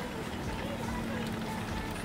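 Low, steady road-and-engine rumble inside a slowly moving car, with faint, indistinct voices and a steady low hum.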